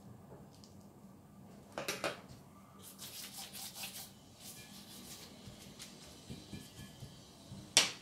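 Silicone pastry brush spreading melted butter and oil over thin baklava phyllo sheets in a glass dish: soft, faint brushing and rubbing strokes. A couple of sharper taps, one about two seconds in and one near the end.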